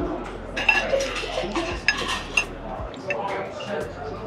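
Table knife and fork clinking and scraping against a plate while cutting food, with several short, sharp clinks.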